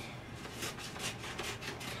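Scissors snipping through a sheet of printer paper: a quick run of short cuts, about five or six a second, starting about half a second in.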